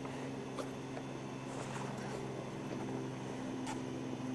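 A steady mechanical hum held at a constant pitch, with a few faint ticks.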